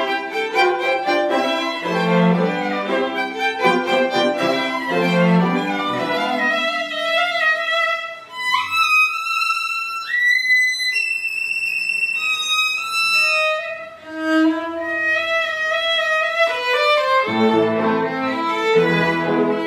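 Live string quartet (two violins, viola and cello) playing a classical piece. After a full passage with all the parts moving, the texture thins about eight seconds in to a high violin line that slides up and holds long high notes. The whole ensemble comes back in near the end.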